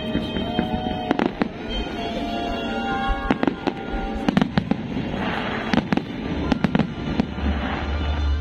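Fireworks shells bursting with sharp bangs at irregular intervals, over music played for the pyrotechnic show.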